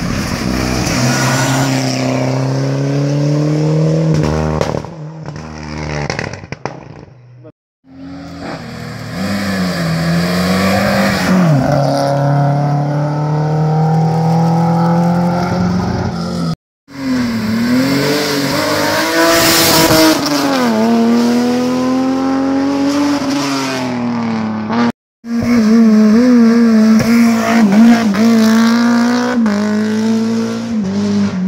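Hillclimb competition cars accelerating hard up a twisting road, engines revving up and dropping back with each gear change and corner. Several cars are heard in turn, the sound breaking off abruptly three times between them.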